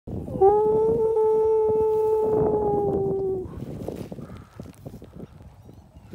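A person calling cattle with one long, drawn-out, high 'woo' of about three seconds that sags slightly in pitch at the end. Softer rustling follows.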